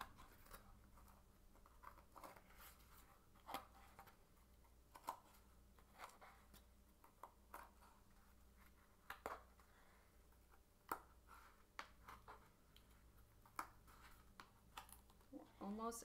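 Faint, irregular soft clicks and rustles of wool yarn being hooked back and forth through the notches of a cardboard loom and the cardboard being handled, a tick every second or two over a low steady hum.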